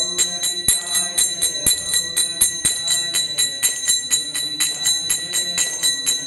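Kartals (small brass hand cymbals) struck in a steady rhythm, about five strikes a second, ringing on between strikes, with a soft held low note beneath.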